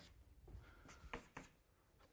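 Faint writing sounds: about five light scratches and taps within the first second and a half, over near silence.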